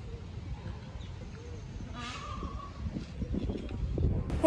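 Outdoor ambience: a low steady rumble with faint distant voices, and one brief higher-pitched call about halfway through.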